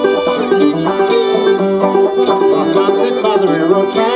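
Fiddle and banjo playing an instrumental passage together: bowed fiddle melody over quick picked banjo notes, in a bluegrass/old-time style.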